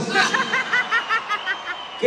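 A person's high-pitched laugh: a quick run of about eight short pulses that fades away.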